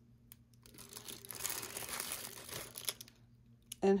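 Crinkling and rustling of the toy's patterned packaging wrap as small doll accessories are handled and unwrapped, building about a second in and fading before the end.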